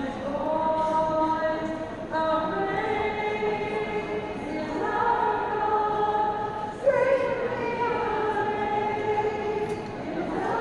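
A group of women singing a slow hymn together, unaccompanied and led by a woman, in long held notes that move to a new pitch every couple of seconds.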